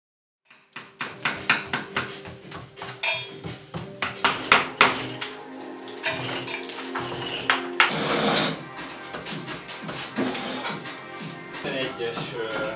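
Hand scrapers scraping and chipping old plaster off a wall and ceiling: a busy run of scrapes and sharp metallic knocks, starting about half a second in.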